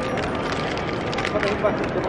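Steady background hubbub of a public arcade with indistinct voices, plus a few small clicks from handling.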